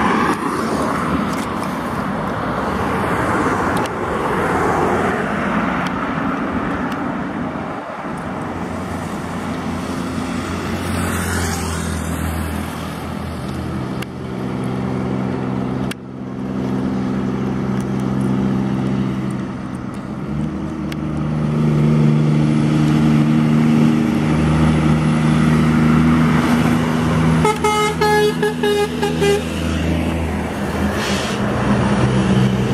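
Heavy diesel trucks passing on a highway: tyre and road noise, then a steady low engine drone as a truck goes by. Near the end a truck air horn sounds in rapid repeated blasts for about two seconds.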